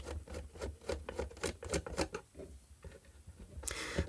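Hand screwdriver turning small screws out of a plastic floodlight housing: a run of light, irregular clicks and scrapes.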